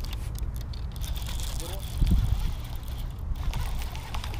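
Wind noise on the microphone, a steady low rumble that swells briefly about two seconds in, with faint voices in the background.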